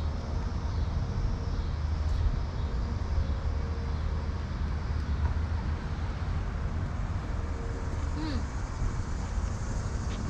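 Outdoor urban street ambience: a steady low rumble with faint distant sounds over it.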